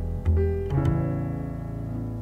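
Jazz piano accompaniment in a slow ballad: a chord struck about a quarter second in and another near three-quarters of a second, each left to ring and slowly fade over low held bass notes.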